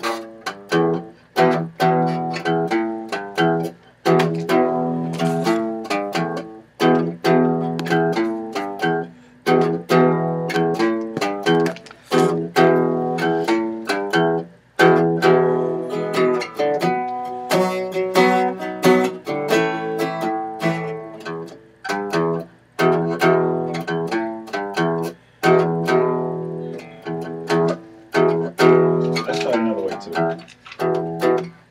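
Guitar strumming a chord progression over and over, in a steady rhythm with short breaks between phrases.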